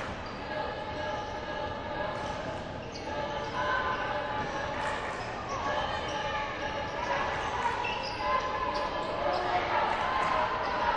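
A basketball being dribbled on a gym floor during live play, with indistinct players' and spectators' voices echoing in a large gymnasium.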